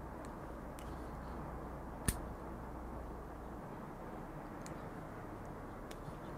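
Milwaukee 7-in-1 high-leverage combination pliers stripping 20-gauge stranded wire: one sharp click about two seconds in, with a few faint ticks, over a low steady background hiss.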